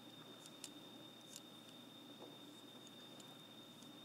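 Near silence: faint room tone with a thin, steady high whine and a few faint small clicks.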